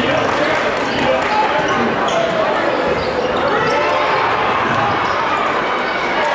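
Live basketball game sound: a ball bouncing on a hardwood gym floor under the steady, indistinct chatter of many voices from the crowd and players.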